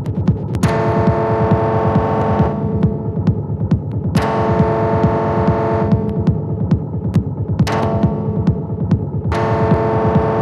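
Raw, unprocessed electronic jam on a Behringer TD-3 and a Cre8audio West Pest synthesizer: a dense, rumbling kick pattern pulses fast and low throughout. A held, buzzy synth note comes in for a second or two at a time, four times, and cuts off each time.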